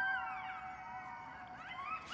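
A pack of coyotes howling close by, several wavering calls overlapping and rising and falling in pitch.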